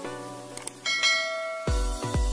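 Subscribe-animation sound effects over a music bed: a faint mouse click, then a notification-bell chime about a second in that rings on for most of a second. A bass-heavy electronic beat kicks in near the end.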